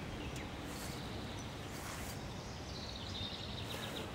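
Quiet outdoor ambience: a steady low hiss and rumble, with a faint, high, repeating chirp in the last second or so.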